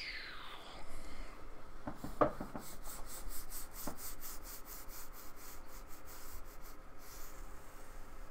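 Flat paintbrush scrubbing thick acrylic paint across a board, its bristles dragging in quick back-and-forth strokes, several a second, from a couple of seconds in until near the end, with a few light taps of the brush along the way.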